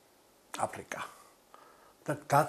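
A man's voice in a pause between phrases: a few soft, breathy, half-spoken syllables about half a second in, otherwise quiet room tone.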